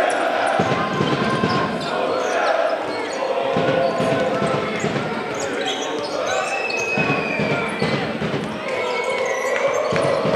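Basketball dribbled on a hardwood court during live play, with short high sneaker squeaks and voices, in a large hall.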